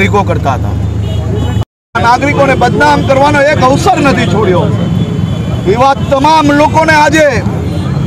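A man speaking into reporters' microphones over a steady low background hum. The audio cuts out completely for a moment just under two seconds in.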